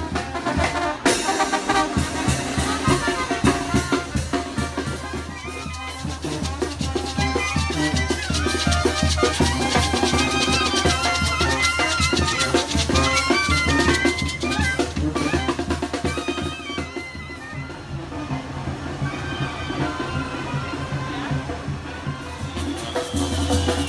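Street brass band playing a lively tune: trumpets, clarinet and sousaphone over drums.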